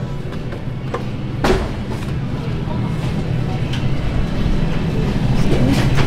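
Indoor store ambience: a steady low hum with background music and faint, indistinct voices, and a sharp click about a second and a half in.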